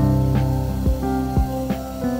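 Background instrumental music: held chords with soft struck notes about twice a second.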